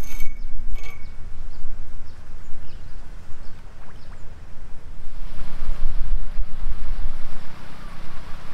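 Wind rumbling on the microphone. About five seconds in, a steady motor hum and churning water join it, the sound of the lake's paddlewheel aerators running.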